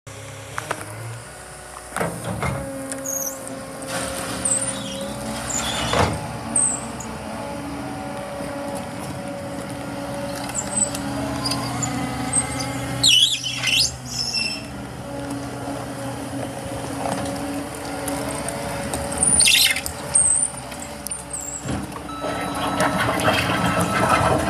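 Caterpillar 299D3 compact track loader's 98 hp diesel engine running with a steady drone as the machine drives and turns on gravel, with several short high squeals and a few sharp clunks along the way.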